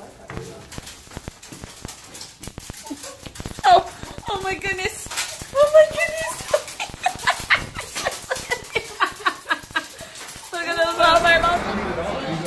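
Small dogs in a pet carrier whining and yipping in high, wavering cries, among clicks and rattles as the carrier is handled. About ten seconds in, this gives way to the chatter of a busy restaurant.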